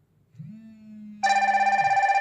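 Incoming-call alert. A low vibration buzz starts about half a second in, and a loud electronic ringtone with a fast warble joins about a second in.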